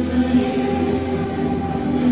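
Live band music from electric guitar and a guitar-shaped keyboard instrument, playing long held notes over a steady low drone.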